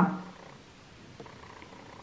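Faint, steady room noise after a spoken word trails off at the start, with one small tick about a second in.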